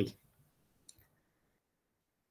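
A speaker's last word trails off, then about a second in comes a sharp click followed at once by a fainter one. This is a computer click advancing a presentation slide, with near silence around it.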